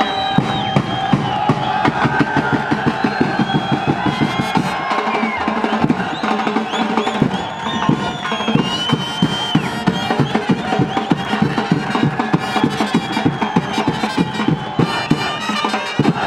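Fast, steady drumming with a wavering melody line carried over it.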